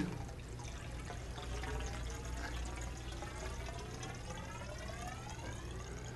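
Water poured into a tall, narrow glass tube about four feet long. The faint pouring carries a set of tones that rise steadily in pitch as the tube fills and its air column shortens.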